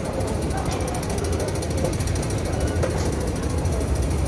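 Escalator machinery running, a steady low mechanical rumble with a light rattle.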